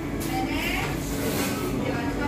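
Busy shop ambience: indistinct background voices over a steady low hum.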